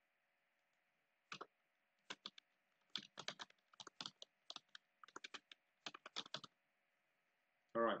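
Typing on a computer keyboard: irregular runs of sharp keystrokes, starting a little over a second in and stopping about a second and a half before the end.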